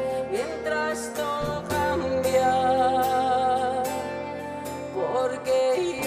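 Live pop-rock band playing, with guitar, and a voice holding long wavering notes without clear words through the middle of the passage.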